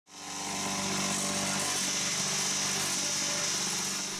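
Electric vibrator motor on a concrete brick-making press running with a steady hum. It fades in at the start.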